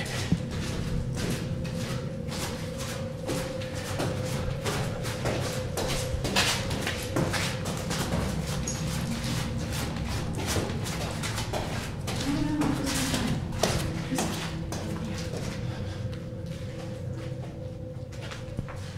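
Hurried footsteps, irregular steps, scuffs and knocks going down a concrete stairway and across a littered floor. Beneath them runs a steady held tone of background music, joined by a second held note for a few seconds past the middle.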